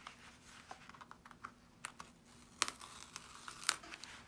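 Small cardboard trading-card box being handled at its end flap to open it: scattered faint clicks and crinkles, with two sharper snaps in the second half.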